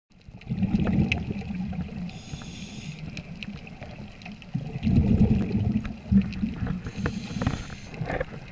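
Scuba regulator breathing heard underwater: bubbling, rumbling exhalations starting about half a second in and again around five and six seconds, with a hissing inhalation around two seconds in and another near the end.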